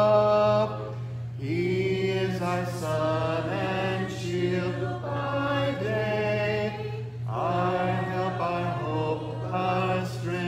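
A congregation singing a hymn a cappella, many unaccompanied voices holding notes phrase by phrase, with short breaths between phrases about a second in and again about seven seconds in. A steady low hum runs underneath.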